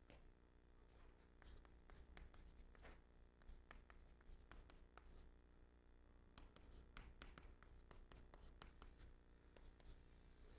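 Chalk writing characters on a chalkboard: faint short taps and scratches of the strokes, coming in irregular clusters.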